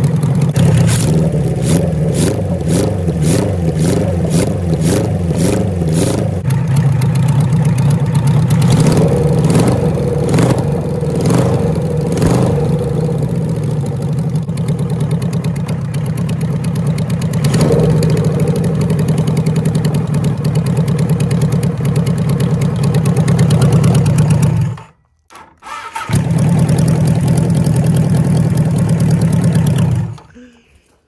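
A 1974 Kawasaki Z1B 900's air-cooled inline four-cylinder engine, run out of the frame on open header pipes. It is running loud and steady, its speed rising and falling in blips of throttle in the first few seconds and again around ten seconds in, then settling. On this first run in over 40 years it idles smoothly, its carburettors judged spot on.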